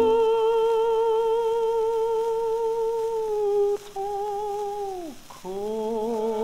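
Operatic tenor voice on a 1927 78 rpm record, holding one long note with vibrato while the orchestral accompaniment drops away at the start. The note breaks off for a moment a little before four seconds in, resumes, then slides downward. A new sung note begins with the accompaniment returning near the end.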